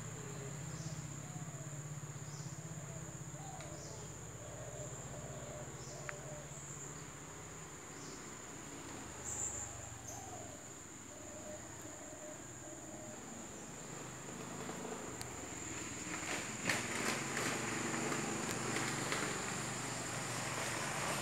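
Insects, crickets or cicadas, keep up a steady high-pitched drone throughout. In the last few seconds footsteps crunch and crackle on dry fallen leaves.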